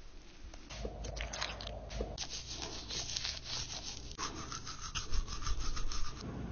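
Close-miked rubbing and scrubbing on a goldendoodle during grooming: a cotton swab working in its ear, then a toothbrush scrubbing its teeth in quick back-and-forth strokes. A steady faint hum joins about two-thirds of the way in.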